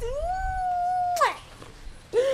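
A woman's long, high-pitched squeal of excitement: it rises at the start, holds one steady pitch for about a second, then drops off.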